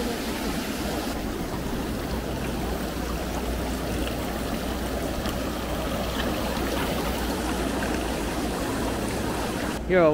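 Water streaming steadily from rows of small jets in overhead pipes and splashing into abalone aquaculture tanks.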